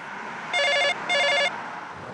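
Telephone ringing: a double ring, two short warbling bursts in quick succession.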